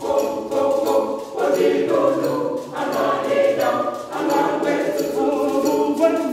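Junior church choir of children singing together, in phrases with brief dips between them about every second and a half.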